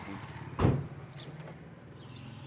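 A single sharp clunk about half a second in as the hatchback's tailgate latch releases to open the boot, over a steady low hum.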